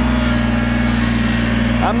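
A Kubota BX compact tractor's small three-cylinder diesel engine running steadily at raised revs under load, the tractor stuck in mud with its wheels spinning and not moving.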